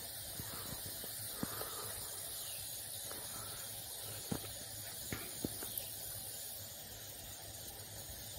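Faint steady outdoor hiss picked up by a phone microphone, with a few soft clicks and taps from the phone being handled while it zooms.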